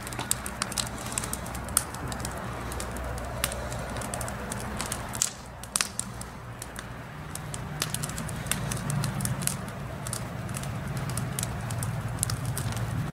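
Wood fire in a fire pit crackling, with irregular sharp pops, over a low steady hum.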